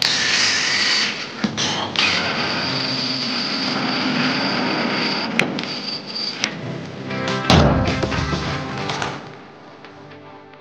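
Cordless drill driving self-drilling screws into corrugated metal roof panels: the motor whines steadily through the screwing, with a louder, deeper burst late on. Background music plays underneath.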